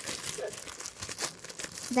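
Clear plastic bag crinkling irregularly as it is handled and pulled open around a squishy toy.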